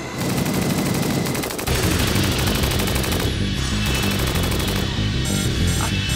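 Rapid machine-gun fire sound effects over loud action music, the music's low beat coming in about a second and a half in.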